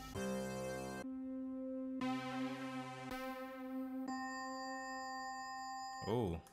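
Synthesizer lead sounds auditioned one after another on the same held keyboard note, the tone changing about every second as a new sound is called up.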